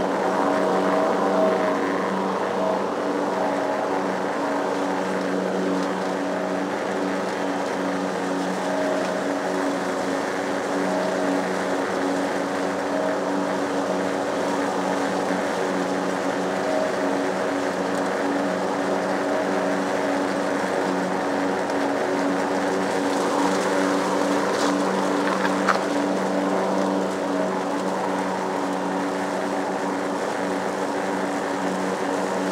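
Gas lawn mower engine running steadily at a constant speed while cutting grass, with a brief knock near the end.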